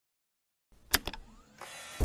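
Sound effects of an animated logo intro: silence for most of the first second, then two sharp clicks in quick succession and a whoosh that swells near the end.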